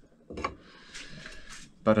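A light knock, then about a second of soft scraping as a metal tube is moved by hand against a bicycle frame.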